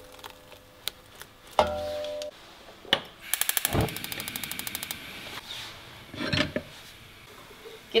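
Gas hob's spark igniter ticking rapidly, about ten clicks a second for roughly a second and a half, as the burner knob is turned to light the flame under a wok, with a dull thump partway through.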